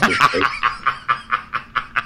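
A man laughing in short, breathy pulses, about seven a second, that weaken toward the end.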